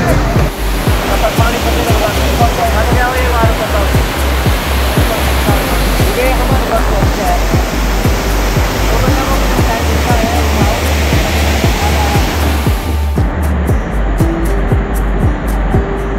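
A muddy river in flood, the water rushing loudly in a dense, continuous wash of noise, with excited voices over it; the water noise drops away about thirteen seconds in. A steady low music beat runs under it all.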